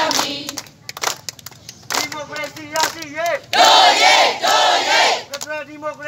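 Protest call-and-response chanting: a single leader's voice through a megaphone calls out, and a crowd shouts back in unison about three and a half seconds in, with the leader calling again near the end. Scattered hand claps from the crowd come in the first two seconds.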